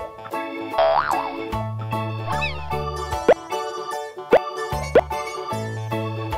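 Bouncy children's background music with a steady beat, overlaid with cartoon sound effects: a wobbly boing about a second in and several quick upward-swooping plops in the second half.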